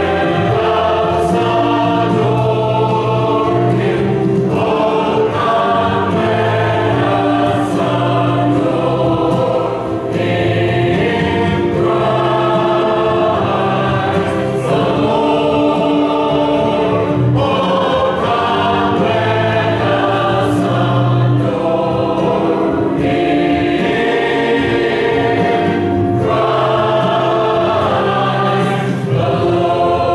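Mixed choir of men and women singing a Christmas song together, loud and continuous, the chords shifting every second or two.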